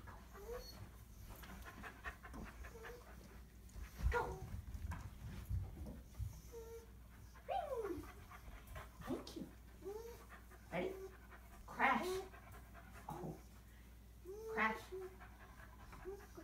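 Airedale terrier puppy panting, with scattered short soft vocal sounds, one sliding down in pitch, and brief knocks of movement.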